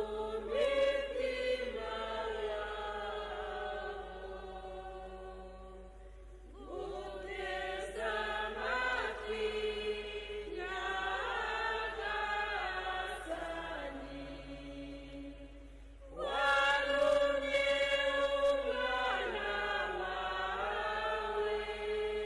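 Church choir singing a slow, chant-like Gospel acclamation in long phrases, with short breaks about six and sixteen seconds in.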